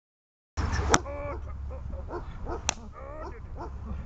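German shepherd gripping a bite sleeve in protection training: two sharp cracks about two seconds apart from the helper's stick, with short high-pitched whines from the dog between them. Wind rumble on the microphone underneath.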